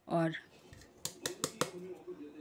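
A stainless-steel mixer-grinder jar tapped against a steel bowl to knock out the last ground coconut powder: four quick, sharp metallic clinks about a second in.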